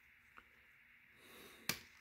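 Quiet handling of a taped paper envelope, with a faint tick early on and one sharp paper click near the end as it is pulled open to free a card.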